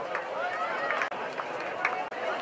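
Indistinct shouting and chatter from several voices around a lacrosse field, overlapping with no clear words, with a few sharp knocks, the loudest near the end.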